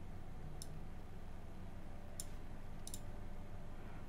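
Three faint computer mouse clicks over a low, steady background hum.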